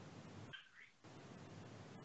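Near silence: faint steady room hum, with one brief, faint, high-pitched gliding sound about half a second in.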